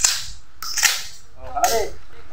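A long gun fired at an outdoor range: a sharp gunshot right at the start, then two more short, sharp bursts about a second apart.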